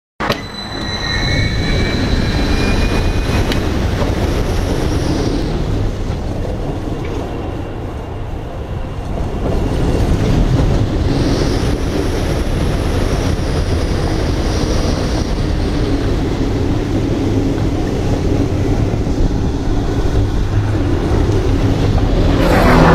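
Roller coaster train of Full Throttle, a Premier Rides launched steel coaster, running on its steel track: a loud, steady rumble of wheels on the rails mixed with wind rush. A rising whine sounds in the first few seconds as the train launches out of the station.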